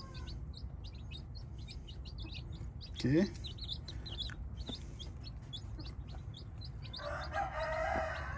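Young chicks peeping, many short high peeps overlapping. Near the end a longer chicken call.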